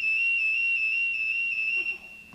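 Firefighter's PASS (personal alert safety system) alarm sounding one steady high-pitched tone that cuts off near the end. It is the alert that a firefighter has stayed motionless for more than 30 seconds and is down inside, needing help.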